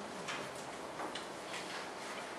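A few soft, scattered clicks or taps over steady room hiss.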